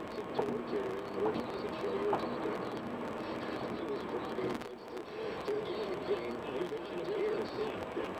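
Steady road and engine noise of a car driving on a highway, with an indistinct talk-radio voice running underneath. The noise drops briefly about halfway through.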